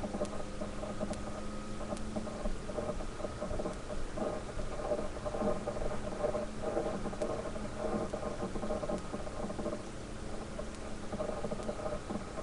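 Sliced onions and curry leaves sizzling as they fry in oil in a metal pan, with a spatula stirring and scraping through them.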